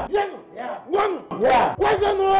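Voices shouting a short call over and over, about two loud shouts a second, each rising and falling in pitch, like a chanted acclamation.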